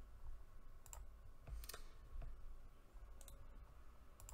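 A few faint, sharp computer mouse clicks, some in quick pairs, over a low room hum.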